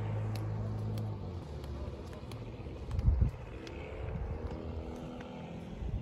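Motorboat engine running with a steady hum, which changes about a second in and then rises in pitch as the boat gets under way. A gust of wind buffets the microphone about three seconds in.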